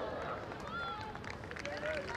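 Short shouted calls from players and spectators at a field hockey match over a steady murmur of crowd noise.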